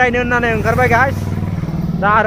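A motor vehicle's engine running close by, a steady low drone with a fast pulse that eases off near the end, with a man's voice over it in the first second.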